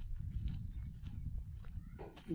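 Wind buffeting the microphone: an uneven low rumble, with a few faint knocks.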